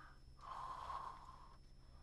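One faint breath into a close microphone, lasting about a second.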